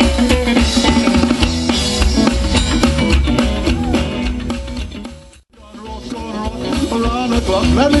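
Live band of electric guitar, upright double bass and drum kit playing an instrumental passage. The music fades almost to nothing about five and a half seconds in, then comes back up.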